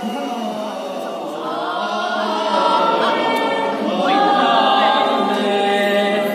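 A gospel choir singing a cappella, several voices holding long notes together, growing louder about two seconds in.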